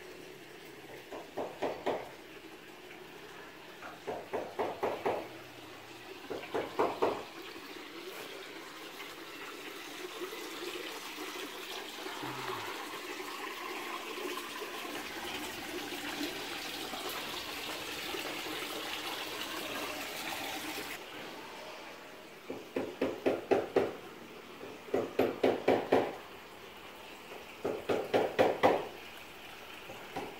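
Water running and splashing into a garden koi pond: a steady rush that grows slightly louder, then stops abruptly about two-thirds of the way through. Short bursts of a rapid pulsing sound come and go before and after the water.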